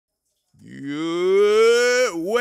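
A man's voice holding one long note into the microphone, starting about half a second in, swelling louder and sliding slowly upward in pitch.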